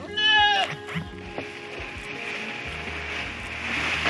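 A goat bleats once, a short loud call that drops in pitch as it ends, over background music. Near the end, chopped leaves rustle as they are stirred in a plastic bag.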